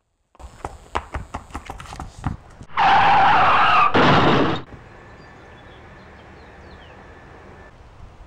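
Car tyres skidding in one loud screech of about two seconds, with a brief break in the middle, during a hit-and-run. It is preceded by a run of sharp clicks and knocks and followed by a steady low hiss.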